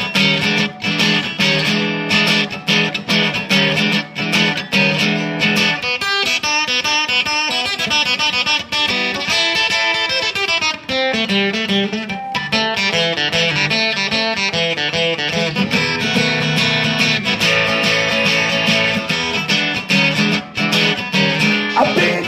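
Acoustic guitar playing an instrumental break in a blues song. Rhythmic strummed chords give way about six seconds in to a passage of single picked notes, with a descending run in the middle. The strumming returns for the last several seconds.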